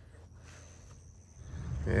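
Faint low rumble of an idling buggy engine, growing louder near the end.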